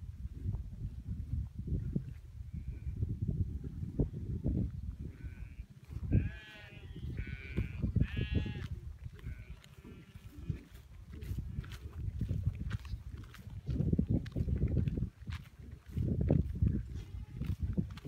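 A distant herd of goats and sheep bleating, several calls bunched about six to nine seconds in and a few fainter ones scattered elsewhere, over a steady low rumble of wind on the microphone.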